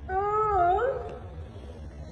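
A domestic cat meowing once, a wavering call of under a second that dips in pitch and then rises at its end.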